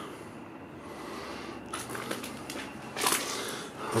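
A quiet pause in a small concrete shelter: low background noise with faint handling sounds, and a short breathy hiss about three seconds in.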